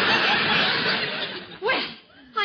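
Studio audience laughing at a gag, a long crowd laugh that dies away toward the end, with one short voice rising and falling near the end. The sound is cut off above about 5 kHz, as on an old broadcast recording.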